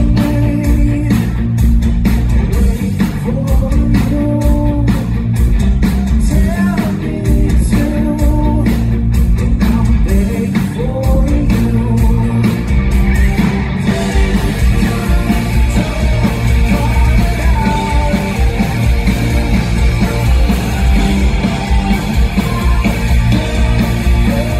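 Live rock band playing a song loudly: electric guitars, bass and drums, with a male lead singer.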